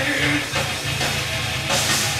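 Live rock band playing loud without vocals: electric guitar, bass guitar and drum kit, with a cymbal crash near the end.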